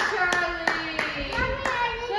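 Hand clapping in an even rhythm, about three claps a second, praising a child's somersault, with a high voice calling out over it.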